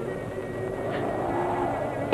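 Soft background film music with long-held tones, one of them wavering gently, over the steady hiss and rumble of an old, worn soundtrack.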